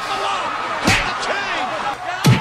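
A single loud slam about a second in, a blow landing on someone lying in bed, over background music and a voice.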